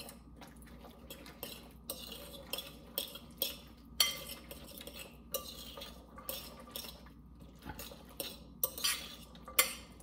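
A metal fork stirring chickpeas and mayonnaise in a glass mixing bowl: irregular clinks and scrapes of the fork against the glass, several a second, the sharpest about four seconds in and again near the end.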